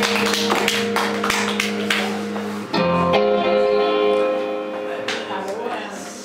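Live rock band with electric guitars holding a chord under drum and cymbal hits, then a final chord struck a little under three seconds in that rings out and fades away, ending the song.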